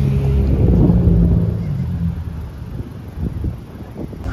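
Wind buffeting the microphone over a low rumble of street traffic, with a steady low hum in the first two seconds; the rumble eases toward the end.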